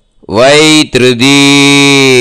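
A man chanting a Sanskrit mantra in long, held notes. It starts a moment in, with a short break about a second in.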